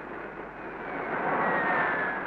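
Jet aircraft engine noise growing louder, with a whine that falls slowly in pitch.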